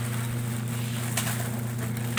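Plastic shopping bag crinkling in brief rustles as it is handled, about a second in and again at the end, over a steady low hum.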